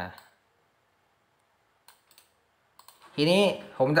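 A few faint, short clicks from computer input while text is selected on screen: a couple about two seconds in and a few more just before three seconds. A man's voice starts speaking near the end.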